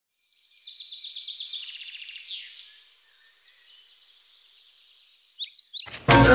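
Woodland songbirds singing: a fast, high trill that steps down in pitch, then a single downward-sliding whistle, softer trilling and a few short chirps. A loud sound cuts in at the very end.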